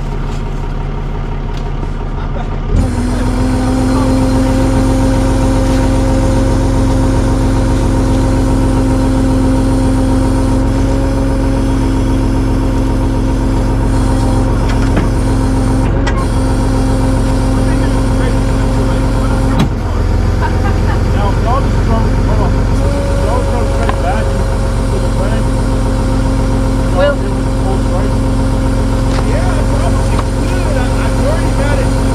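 A vehicle engine running steadily. About three seconds in it steps up sharply to a higher, steady speed and holds there.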